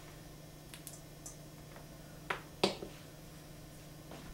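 Van de Graaff generator running with a steady low motor hum, while static sparks jump from the charged dome with sharp snaps: a few faint ones around one second in, then two louder ones a little after two seconds.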